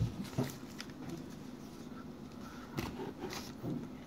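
Trading cards handled and flipped through by hand: a few faint, scattered taps and slides of card edges against one another.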